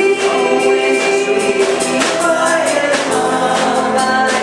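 Gospel song: women singing with instrumental accompaniment and a steady beat.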